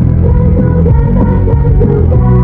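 Idol-group pop song with an 'underwater' effect: a muffled, bass-heavy mix with the singing and backing dulled.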